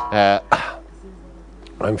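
A man clears his throat in a short voiced burst, then pauses for about a second before starting to speak again near the end.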